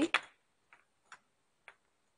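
Light clicks of porcelain Christmas ornaments being handled on a hanging display: one sharp click just after the start, then three faint ticks spread over the next second and a half.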